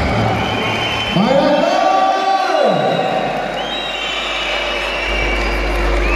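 Crowd in a large, echoing sports hall: many voices talking and calling out at once, with one long voice-like call that rises and then falls in pitch about a second in.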